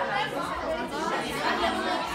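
Many overlapping voices of girls talking at once: steady classroom chatter, with no single voice standing out.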